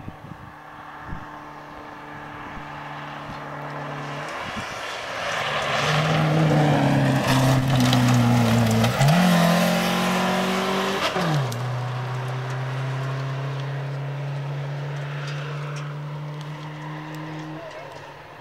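Subaru Impreza rally car on a gravel stage under hard throttle, its engine note rising and changing gear as it approaches, loudest as it passes about ten seconds in with a sharp drop in pitch, then a steady lower note fading as it drives away.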